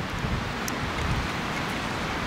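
Steady outdoor wind noise on the microphone, with a gusty low rumble and one faint click about a third of the way in.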